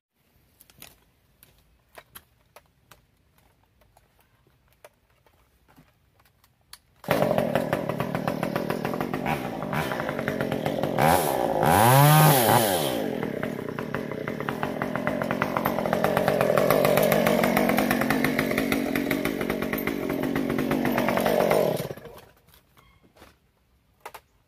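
Gas chainsaw clearing brush at the base of a tree: after several seconds of quiet with faint clicks it runs loud for about fifteen seconds, revving up and back down once around the middle, then stops near the end.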